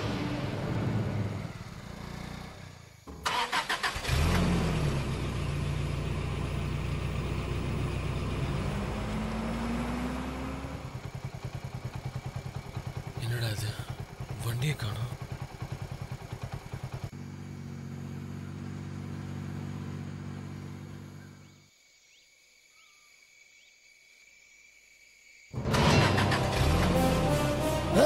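Motorcycle engine starting abruptly about three seconds in and running steadily, its pitch rising briefly as it revs up, then a second steady stretch of engine sound. Film music plays before it and returns after a near-silent pause near the end.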